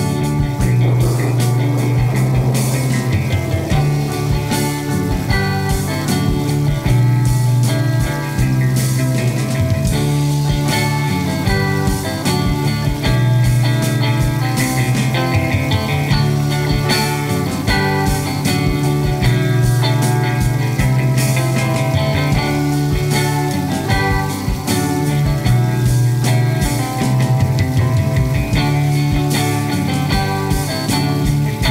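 Instrumental progressive folk-rock: guitar over held bass notes and drums, with no vocals.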